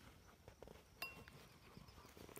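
A hen's beak pecking at a bowl: one sharp clink with a short ring about a second in, a few faint taps before it, otherwise near silence.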